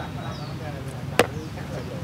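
A drinking glass set down on a plastic stool: one sharp clack about a second in, over faint background voices.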